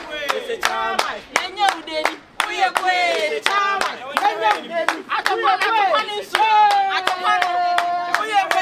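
A group clapping hands in a steady rhythm, about three claps a second, while voices chant or sing over it; near the end one voice holds a long note.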